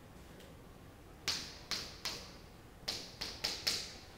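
A stick of chalk tapping against a chalkboard, about seven sharp taps in two groups over the second half, as numbers are written.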